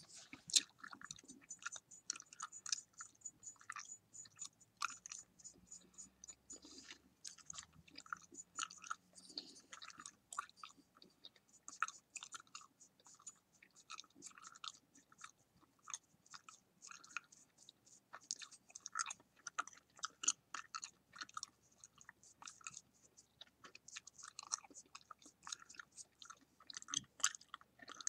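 Bubble gum being chewed with the mouth open: a steady, irregular run of short clicks.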